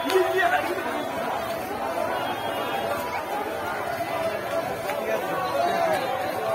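A crowd of marchers talking and calling out at once, many voices overlapping in a steady babble.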